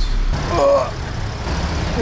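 Steady traffic noise and an idling car engine heard through an open car window at a motorway toll gate, with a brief voice-like sound about half a second in.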